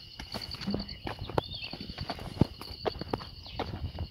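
Footsteps on dry stony ground and dry grass, a run of irregular scuffs and knocks. Behind them a steady high pulsing chirp, and one short arched chirp about a second and a half in.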